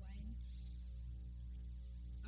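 Steady low electrical mains hum, a stack of even steady tones, from the microphone and sound system during a pause in speech.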